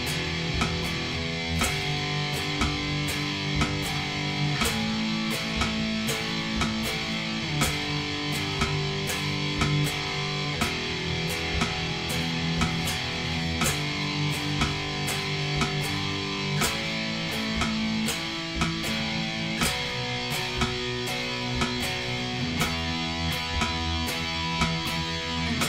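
Electric guitar playing a riff of power chords along with a playback track, with regular sharp percussive hits through it.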